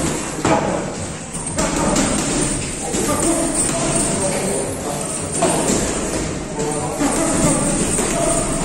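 Boxing gloves landing with scattered thuds during sparring, over background music and voices.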